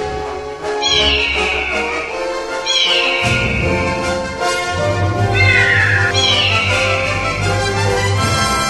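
Background music with steady sustained notes, over which high animal cries sound four times, each falling in pitch over most of a second: about a second in, near three seconds, and twice between five and six-and-a-half seconds.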